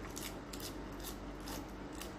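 A person chewing raw lettuce close to the microphone: a quick run of crisp, crackling crunches.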